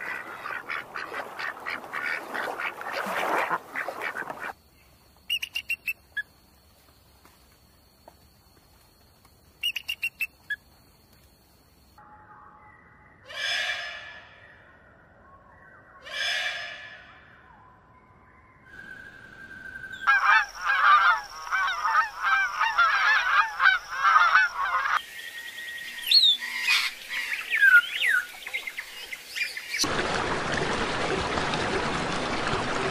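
Bird calls in a string of separate clips. First a rapid flurry of duck calls, then a near-quiet stretch with a few brief calls, then two loud calls a few seconds apart. After that comes a dense, busy chatter of calls, and scattered chirps to finish.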